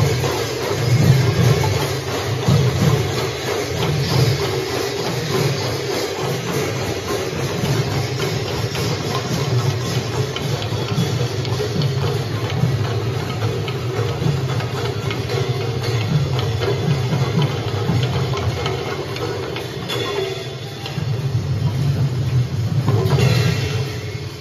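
Massed khol drums, the two-headed barrel drums of Assamese devotional music, played in unison by a large ensemble, giving a dense, continuous low beat. The drumming thins briefly a few seconds before the end, then comes back in.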